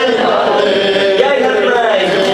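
A man chanting an Arabic Shia mourning lament (latmiyya) into a microphone, in a melodic recitative voice that rises and falls.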